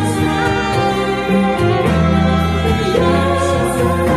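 Live band playing a song: a singer's voice over piano, bass and drums, with cymbal strokes recurring every half second or so.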